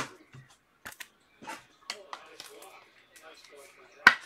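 Faint low talking, with two sharp taps of trading cards being handled, one right at the start and one about a second in.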